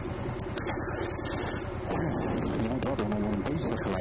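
Honda ST1300 Pan European's V4 engine idling steadily at a standstill, with a voice talking over it in the second half.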